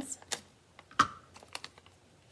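Scissors snipping pieces off a sheet of foam adhesive dimensionals: a few short sharp clicks, the loudest about a second in, with light handling of paper and card between.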